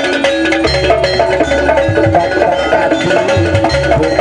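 East Javanese jaranan music: a wavering, gliding melody line over repeated deep hand-drum strokes and light knocking percussion.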